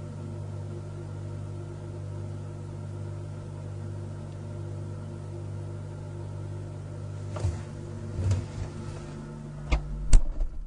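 A steady low electrical hum with several even overtones, unchanging throughout. Near the end a few soft bumps and then sharp clicks break in.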